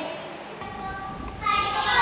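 Young girls talking in a huddle, then about one and a half seconds in a loud chorus of girls shouting together, like a team cheer.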